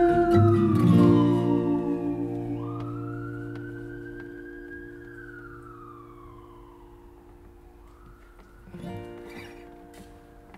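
The final chord of two acoustic guitars rings out and fades away. Through it a siren wails in slow sweeps, falling, rising and falling again. There is a brief noise near the end.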